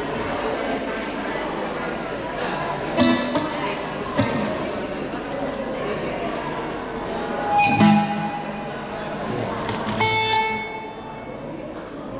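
A few loose guitar notes and chords, struck one at a time and left to ring out, as instruments are tested during a band soundcheck, over steady talk in a large hall.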